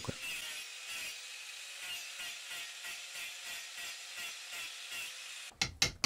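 Angle grinder fitted with a wood-carving disc, running steadily as it rasps away wood from a log. A few loud knocks come in the last half second.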